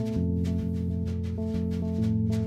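Live instrumental improvisation by electric bass, electric guitar and drum kit: held bass notes under guitar tones, with drum and cymbal strokes at a steady pulse.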